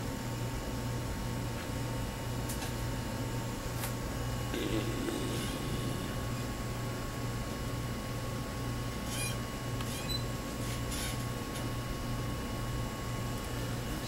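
Steady low electrical equipment hum with a thin high tone above it, and a few faint clicks.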